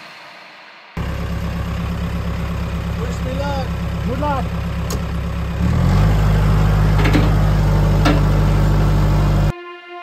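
Compact tractor engine running steadily close by, then revved up a little past halfway so it runs faster and louder, stopping abruptly near the end.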